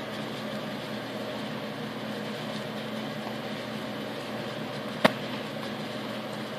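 Steady low hum and hiss of room background noise with a faint steady tone, broken by a single sharp click about five seconds in.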